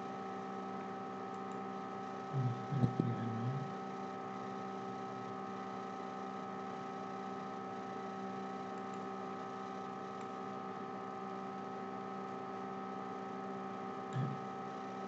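Steady electrical hum made of several held tones, with a brief patch of soft low bumps about two and a half to three and a half seconds in.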